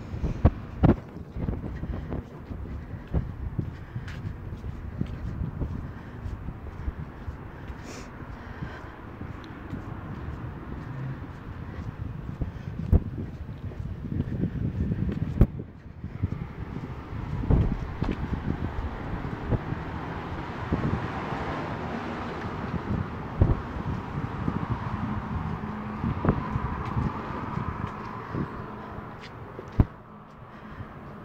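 Wind rumbling on a phone microphone as the person walks, with frequent sharp thumps from footsteps and handling of the phone. A broad hiss swells up about halfway through and holds until near the end.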